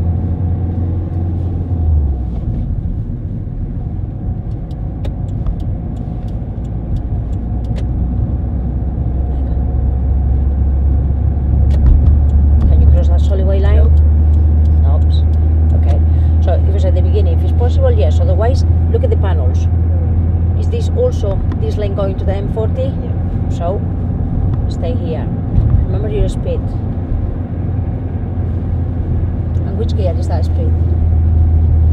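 Steady low drone of a car's engine and tyres heard from inside the cabin while driving. Low voices talk through the middle.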